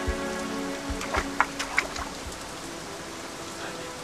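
Steady rain falling, under soft background music with sustained tones, growing a little quieter toward the end.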